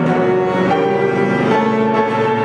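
Cello and grand piano playing together: the cello bows sustained notes over the piano accompaniment, moving to new pitches twice.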